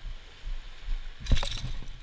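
Fishing pliers and a hard lure's metal hooks clinking as the lure is worked free from a sea bass's mouth, with one short, sharp clatter about a second and a half in, the loudest sound.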